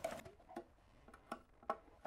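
Five-in-one painter's tool prying up the lid of a metal paint can, worked around the rim: three faint, sharp clicks of metal on metal.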